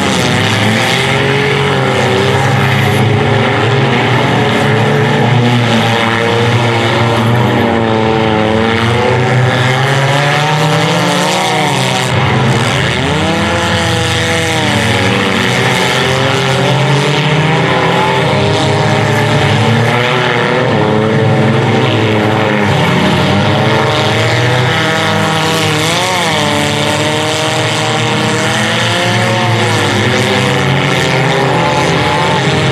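Several modified front-wheel-drive race car engines running hard at once on a dirt track. Their overlapping pitches keep rising and falling as the cars accelerate and lift, with sharp rise-and-fall revs about halfway through and again near the end.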